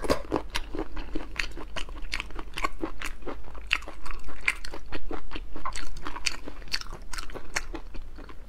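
Close-miked chewing of raw black tiger prawn: a dense, irregular run of short mouth clicks and smacks.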